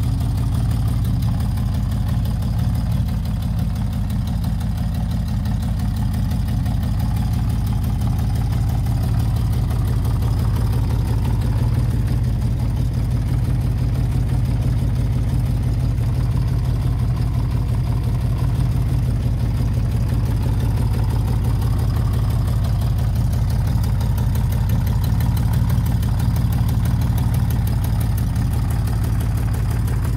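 Honda CBX 1000's air-cooled inline-six engine idling steadily as it warms up.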